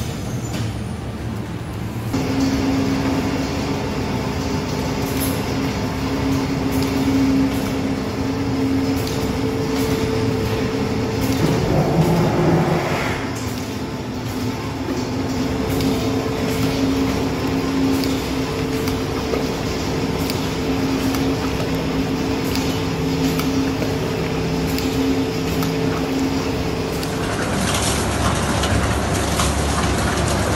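Food depositing machine and factory machinery running: a steady two-tone mechanical hum that starts about two seconds in, with scattered light clicks and a brief louder surge midway. Near the end the sound changes to a rougher rushing noise.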